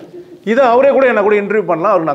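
A man's voice, after a brief pause, resumes about half a second in with a drawn-out, gliding vocal phrase.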